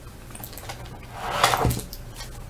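A few light computer-mouse clicks, then a short breathy sound with a low knock about a second and a half in.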